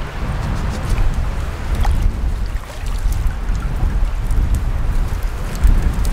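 Wind buffeting the microphone: a loud, gusting low rumble, with a few faint clicks from the wire-mesh fish trap being handled.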